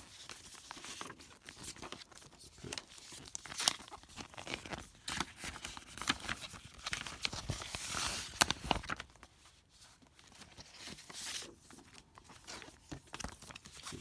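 Paper documents and plastic binder sleeves being handled: irregular rustling and crinkling with sharp crackles, busiest about halfway through, then briefly quieter.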